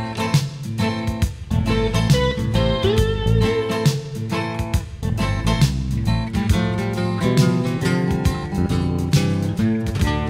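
Instrumental intro of a song: strummed acoustic guitar and electric guitar over bass guitar and a Roland TR-505 drum machine beat, with a long held guitar note about three seconds in.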